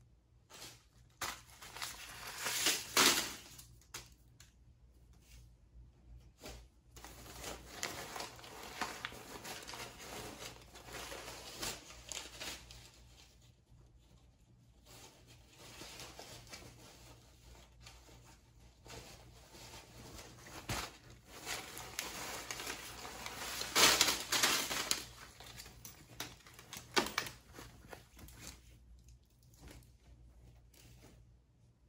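A big pile of paper one-dollar bills poured out of a bag and spread by hand: irregular rustling and crinkling of paper, with louder bursts a few seconds in and again about 24 seconds in.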